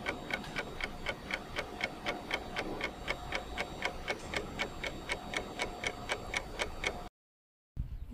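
Clock-ticking sound effect used as a quiz countdown timer, about four even ticks a second over a faint steady tone. It cuts off abruptly about seven seconds in.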